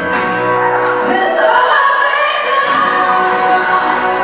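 A woman's lead vocal belting a long, high, wavering note over acoustic guitar and symphony orchestra. The low accompaniment drops away for about two seconds in the middle, then returns.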